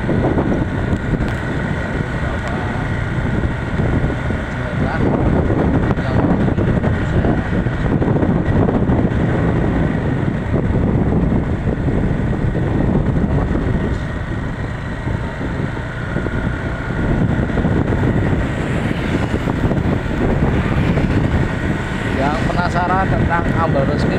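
Motorcycle riding along a road: wind rushing over the microphone mixed with the engine and tyre noise, steady with small rises and dips in level.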